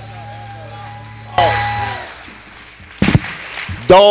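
Amplified acoustic guitar notes ringing and fading out after the end of a song, with a fresh note struck about a second and a half in that dies away within half a second. A few sharp knocks follow about three seconds in, and a man's voice starts at the very end.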